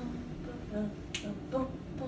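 A single sharp finger snap, just past the middle.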